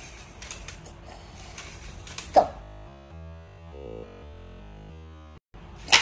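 A LEGO Spike Prime motor turning a small robot's gear-and-crank arm: a mechanical whir with light clicking and creaking. A loud, sharp burst of noise comes right at the end.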